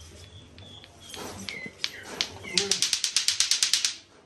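Clacker balls (two green plastic balls on a string) knocked together in a fast, even run of sharp clacks, about ten a second, starting about two and a half seconds in and stopping near the end.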